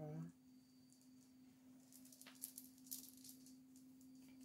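Hair beads on long braids clicking and rattling faintly as the braids are handled, in quick light ticks from about halfway through, over a steady low hum.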